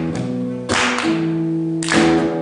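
Steel-string acoustic guitar strummed hard: a few sharp chord strokes, about a second apart, each chord ringing on after it.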